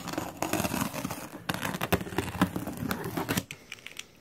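Utility knife cutting along the packing tape on a cardboard box, the tape tearing and crinkling with many small scratchy clicks, dying away about three and a half seconds in.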